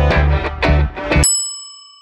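Background rock music with guitar and a steady bass line cuts off suddenly a little over a second in, and a single bright bell-like ding rings out and fades slowly.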